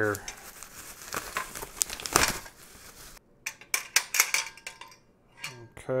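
Bubble wrap crinkling and rustling as it is pulled open by hand, with one louder crackle about two seconds in. In the second half the rustling gives way to a string of sharp separate clicks as the parts inside are handled.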